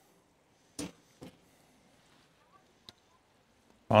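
Near silence, broken by two faint short clicks about a second in and a tiny tick near the end.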